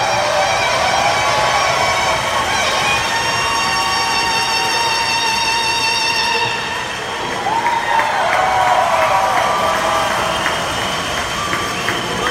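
Solo saxophone holding long notes with vibrato in a large, echoing arena, stopping about six seconds in. The crowd then cheers and applauds, with whistles and claps.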